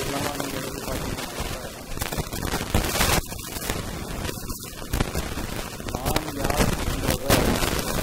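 A man's voice heard faintly through a microphone under a loud steady hiss, broken by sharp cracks or pops about three, five and seven seconds in.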